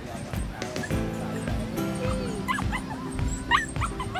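A small dog yipping in a quick run of short, high barks in the second half, over background music and voices.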